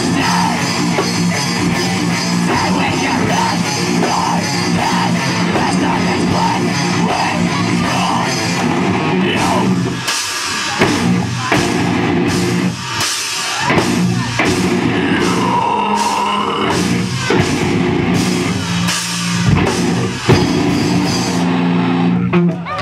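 Live heavy rock band playing loud: distorted electric guitars, bass and a full drum kit. About halfway through the music breaks into short hard stops and a choppier stop-start section.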